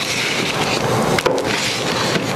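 A small measuring cup scooping crumbly mushroom compost off a paper plate, with one sharp tap just past a second in, over a steady rushing background noise.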